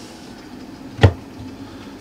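The plastic lid of a Mellif 20-volt battery-powered car refrigerator shut with a single thump about a second in, over the running fridge's steady low hum.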